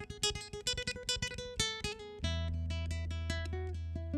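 Solo nylon-string classical guitar played fingerstyle: quick runs of plucked notes, then about two seconds in a low bass note rings on under a slower melody.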